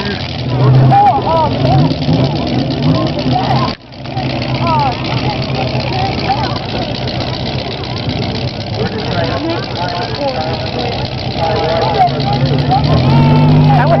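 Engines of full-size pickup trucks running, under the chatter of a crowd of spectators. The sound cuts out for a moment about four seconds in.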